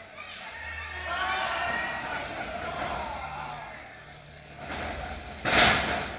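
Crowd voices in a large hall, then, about five and a half seconds in, a loud thud of a wrestler's body hitting the wrestling ring mat, followed by a short echo.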